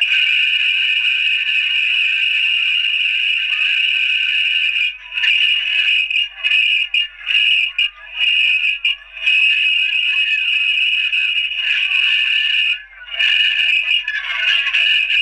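Cartoon soundtrack sped up many times over, heard as a shrill, almost steady high squeal with a few brief drop-outs in the middle and near the end.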